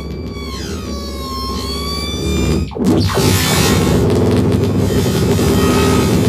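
Experimental noise through distortion and effects pedals: squealing tones that glide up and down, then, just under three seconds in, a brief dip and a loud, dense wall of distorted noise. The noise comes from a contact-miked pane of glass played against the mouth.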